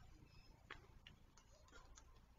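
Near silence, with a few faint, scattered ticks.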